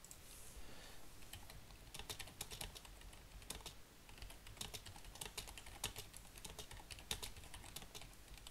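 Typing on a computer keyboard: quick, irregular key clicks, faint, with brief pauses between runs of keystrokes.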